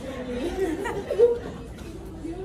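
Indistinct talk and chatter of several voices.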